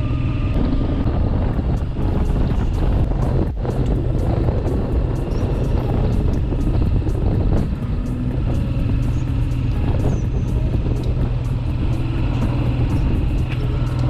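Motorcycle engine running steadily at cruising speed, heard from the rider's seat with a constant low hum under road noise.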